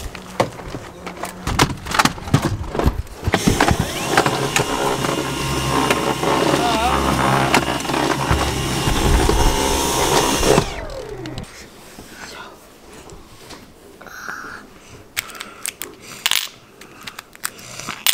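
Vacuum cleaner vacuuming a cargo bike's box. The motor switches on about three seconds in, runs steadily for about seven seconds, and is switched off, its whine winding down in pitch. Clicks and knocks from handling come before and after.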